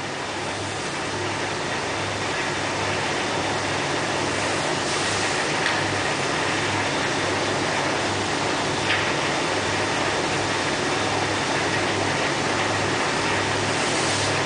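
A steady rushing noise with a low hum under it that pulses about twice a second, a continuous background bed with no voice over it.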